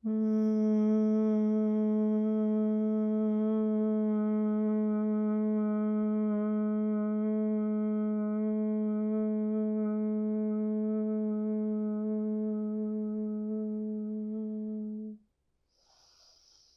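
A woman's long, steady hum on one low note, held through a single exhale for about fifteen seconds and slowly fading before it stops: bhramari, the yogic humming bee breath. Near the end comes a short breath in through the nose.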